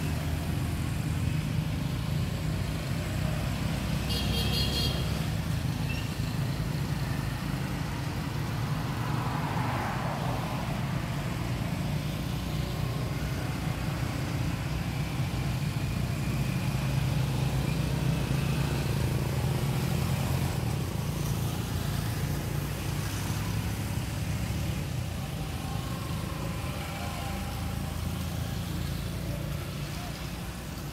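Steady low rumble of a motor vehicle engine running, with a short high-pitched sound about four seconds in.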